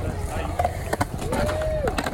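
Skateboard wheels rolling on a concrete skate bowl, with sharp clacks of boards striking the concrete, over the chatter of a crowd of onlookers. A short held whistle-like tone sounds about one and a half seconds in.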